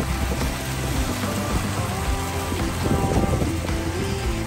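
Small fountain jets splashing steadily into a shallow basin, with background music playing over them.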